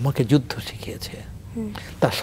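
Only speech: a man talking in short phrases, with pauses between them.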